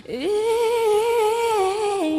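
A singing voice in a Christmas song slides up into one long held note, wavering slightly, and dips a little in pitch near the end.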